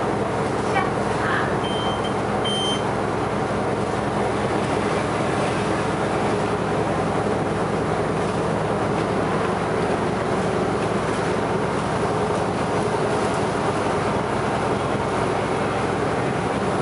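Inside the cabin of a moving Sunwin city bus: steady engine drone and road noise. Two short high beeps sound about two seconds in.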